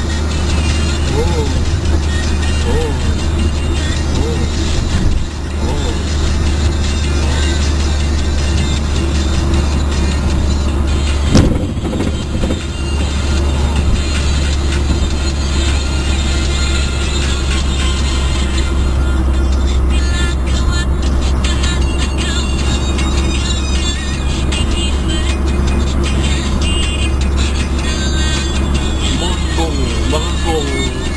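Car driving on a highway, heard from inside the cabin: a steady low road and engine rumble, with music and a voice over it and a single sharp knock about eleven seconds in.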